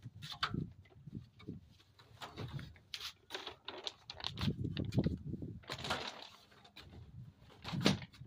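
Irregular footsteps and the rustle of a plastic sheet being handled and carried, with a few soft knocks.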